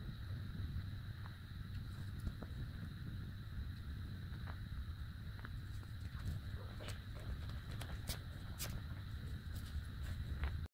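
Faint handling sounds of hands sewing a metal keyring onto a small crocheted piece with needle and yarn: scattered soft clicks and rustles, over a steady low hum and a faint high whine.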